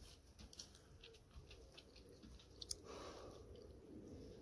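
Near silence: a person drawing quietly on a vape pen, with a few faint clicks, then a soft exhale in the last second.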